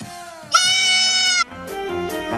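A single goat bleat sound effect, loud and just under a second long, starting about half a second in over a short musical jingle; the music carries on after it.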